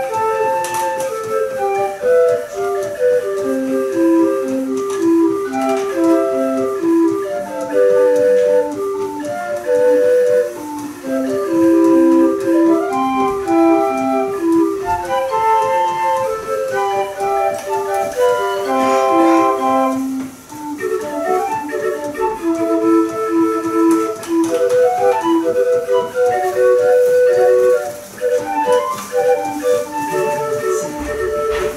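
Self-built 20-note mechanical busker organ playing a tune from punched paper music: a bouncy melody of short, flute-like pipe notes over a lower accompaniment, with a brief pause about two-thirds of the way through.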